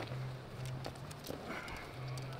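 Arrows being pulled out of a foam 3D archery target: small clicks and scraping of the shafts as they come free, over a low steady hum.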